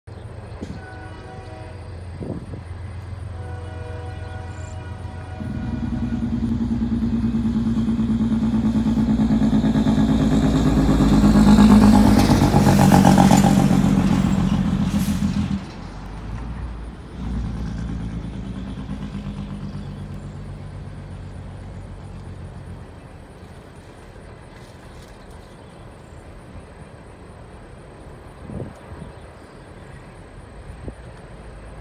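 BNSF coal train's diesel locomotives running past at a distance. The engine drone swells to its loudest about twelve seconds in with a rush of noise, drops off sharply a few seconds later, and fades to a low rumble of the passing coal cars. Short horn blasts sound in the first few seconds.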